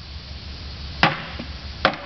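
Two sharp blows about a second apart, with a lighter knock between, as a long-handled hammer is swung into a painted wooden box, breaking its panels apart.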